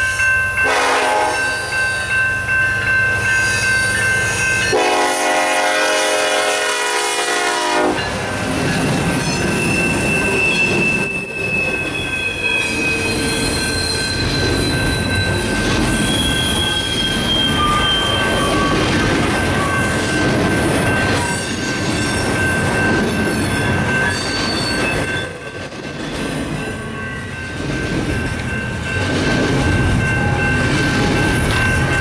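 BNSF freight locomotive's air horn sounding in several blasts, the last and loudest running from about five to eight seconds in. Then the double-stack container cars roll past with a steady rumble of wheels on rail and high squeals from the wheels on the curve.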